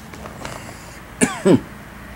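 A man gives two short, throat-clearing coughs about a third of a second apart, each dropping in pitch.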